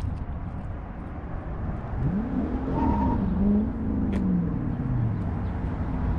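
Wind rumbling on the microphone, with an engine passing by from about two seconds in, its pitch rising and then falling away by about five seconds.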